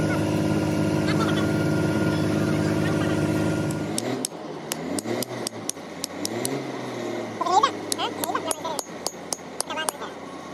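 A steady mechanical drone for about four seconds, cut off suddenly; then a series of sharp metallic clicks and scrapes as a screwdriver picks the old seal out of a hydraulic cylinder's steel gland housing.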